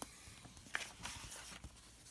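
A faint rustle as a page of a hardcover picture book is turned and handled, with a short tap a little before one second in.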